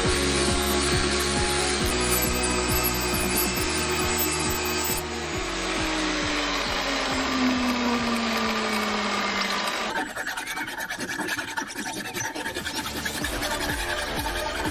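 A round file rasping rapidly back and forth inside the ring of a leaf-spring steel kunai, starting abruptly about ten seconds in. Background music plays before it.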